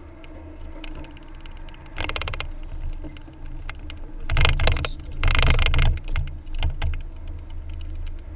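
Steady low road rumble inside a car, broken by two bouts of rapid rattling and knocking, the longer and louder one about halfway through, as the car jolts off the highway onto broken concrete pavement.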